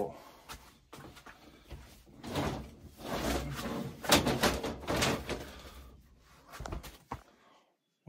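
Black metal shelving unit with chipboard shelves being shifted and dragged out of a tight gap: a series of scrapes and knocks from the metal frame, loudest in the middle and dying away near the end.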